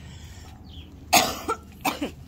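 A person coughing three times in quick succession a little over a second in, the first cough the loudest.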